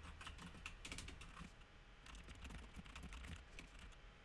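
Faint typing on a computer keyboard: a quick run of key clicks with a short pause partway through, as a command line of process ID numbers is entered.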